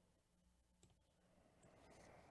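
Near silence: room tone with a low hum and one faint click about a second in.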